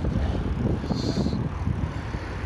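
Bicycle riding over sidewalk pavement: a steady low rumble of tyres with many irregular small knocks and rattles from the bike over the uneven surface. A brief faint high tone sounds about halfway through.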